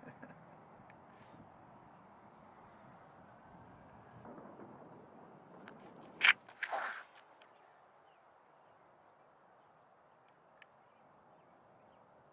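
Faint outdoor ambience, broken about six seconds in by a brief sharp sound and a short hiss.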